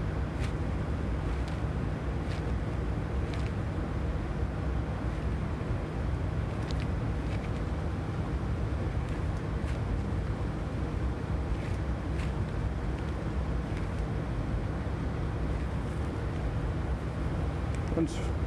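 Steady whoosh and low hum of a biological safety cabinet's blower and airflow, with a few faint clicks.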